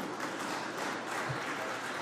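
Members of a parliament applauding, a steady wash of clapping.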